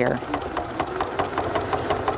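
Household sewing machine running steadily, doing free-motion narrow zigzag stitching with the feed dogs lowered; the needle strokes make a fast, even ticking clatter.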